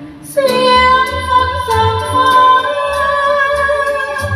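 Woman singing a Thai ballad into a microphone over a karaoke backing track with a steady bass beat. After a short breath pause, a new sung phrase starts about half a second in, with long held notes.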